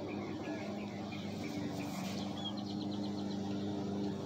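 Lawn mower engine running steadily as a low hum. About halfway through, a brief run of faint high chirps.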